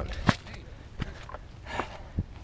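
Footsteps of hikers climbing steps on a dirt trail: three separate footfalls about three-quarters of a second apart.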